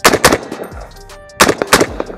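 Springfield Saint Victor .308 AR-10 semi-automatic rifle with a muzzle brake, fired four times as two quick double taps: two shots about a quarter second apart at the start, then two more about a second and a half in.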